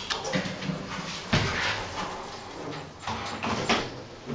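A vintage Dover Turnbull elevator's call button clicking, then its doors sliding shut with a heavy thud about a second and a half in, followed by more clunks near the end as the car gets under way.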